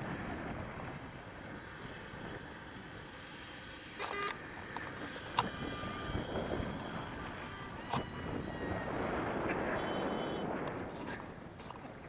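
Wind rushing over the microphone of a paraglider in flight, swelling and easing, with a few sharp clicks and brief faint tones.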